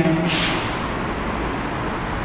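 Steady, even background noise with no distinct events, and a brief hiss about half a second in.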